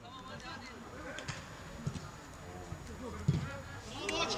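Football pitch ambience: faint distant shouts of players over an outdoor background hum, with a few soft thuds of the ball being kicked.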